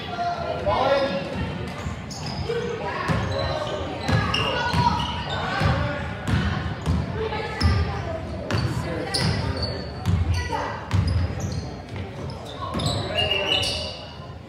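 Basketballs bouncing on a hardwood gym floor, repeated thuds at an uneven pace, under the voices of players and spectators, all echoing in a large gym.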